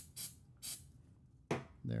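Three short hisses from an aerosol CA glue activator spray (Mitreapel) in the first second, sprayed onto freshly superglued 3D-printed parts to set the glue instantly.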